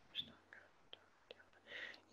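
Near silence: room tone with a few faint, short clicks and a soft breath near the end.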